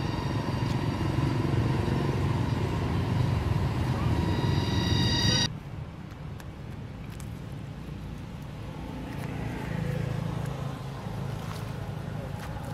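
A motor vehicle engine running steadily, a low rumble with a steady whine above it. The whine grows a little louder and then cuts off suddenly about five seconds in, leaving a quieter low rumble with faint clicks.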